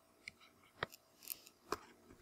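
About four faint, sharp clicks at uneven spacing, from clicking at the computer on the scroll bar of the notes.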